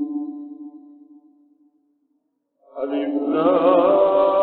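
A man's voice chanting a religious recitation: a long held note fades away, then after about a second's pause he starts a new held phrase with a wavering, ornamented pitch.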